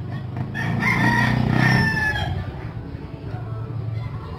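A rooster crowing once, a drawn-out call of about a second and a half that starts near a second in, with its pitch falling slightly toward the end.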